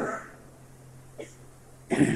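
A short pause in a man's speech: a faint steady low hum of the recording, one brief soft sound a little past a second in, and his voice starting again near the end.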